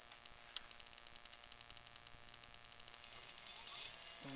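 Electric scooter's rear hub motor turning the wheel under power, heard faintly as a rapid ticking of about ten ticks a second over a low hum.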